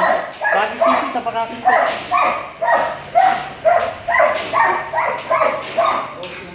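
Dog barking repeatedly in short, quick barks, about two a second.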